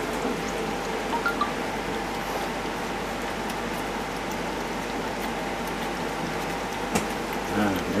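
Young hedgehogs lapping and licking milk from a plastic bowl: a steady, even patter of many small wet licking sounds.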